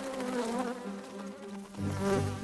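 Cartoon sound effect of a bee's wings buzzing in flight: a steady hum, joined by a louder, deeper buzz near the end.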